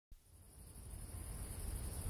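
Crickets chirping: a steady high-pitched trill over a low hum, fading in from silence.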